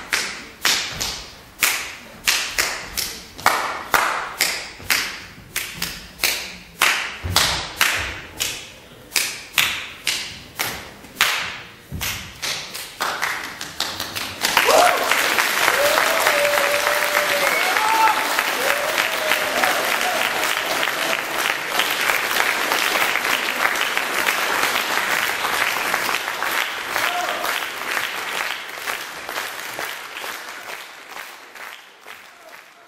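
A solo percussionist's sharp, echoing strikes, about two a second and quickening, then about halfway through an audience breaks into applause with cheers and shouts that runs on and slowly fades.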